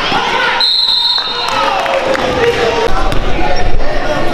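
Basketball game sound in a gymnasium: a ball bouncing and players' and spectators' voices echoing in the hall. A short, high referee's whistle sounds about half a second in, calling the foul that leads to free throws, and heavier thuds come near the end.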